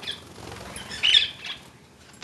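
Lineolated parakeet giving a brief high chirp about a second in, over soft rustling.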